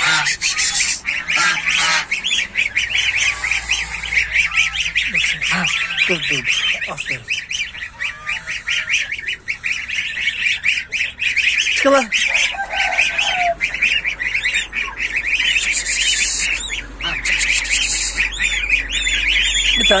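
A group of goslings peeping without pause, many rapid high calls overlapping, with a few lower falling calls among them, one clear one about twelve seconds in.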